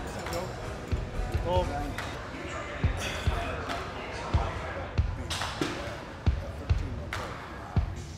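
Gym background noise with faint voices, broken by short low thuds every second or so, as from weights being set down and struck.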